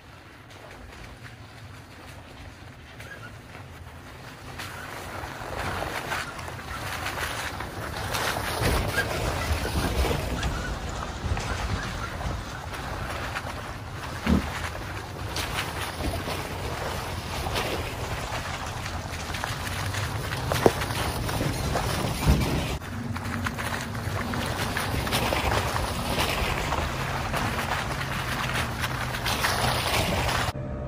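Off-road pickup trucks and an SUV crawling past one after another on a rocky, muddy trail, engines and tyres growing louder as the first truck nears, then holding steady as the others follow. There are a few sharp knocks along the way.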